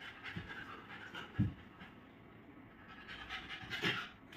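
Beagle puppy panting, with a thump about a second and a half in.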